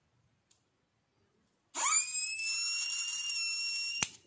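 Homemade self-excited boost inverter whining as its oscillator starts up: about two seconds in a tone sweeps quickly up into a steady high-pitched whine with overtones, which cuts off abruptly at the end.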